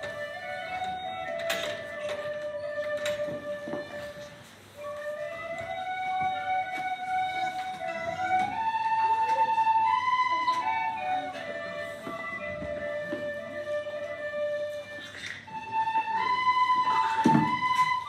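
A group of children playing a simple melody together on tin whistles, moving in steps through their low register, with a short break between phrases about four seconds in.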